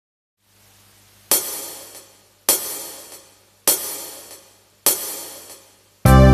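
Four cymbal strikes about a second apart, each ringing and fading away, with a softer tick between them: the count-in at the start of a karaoke backing track.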